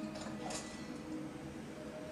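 Faint background music with sustained tones, and a soft brief rustle of hair strands being handled about halfway through.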